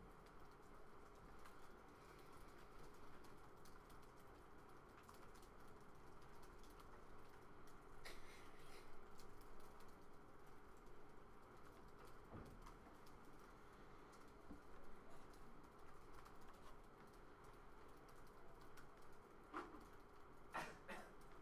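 Faint, scattered tapping of a laptop keyboard over a steady low room hum.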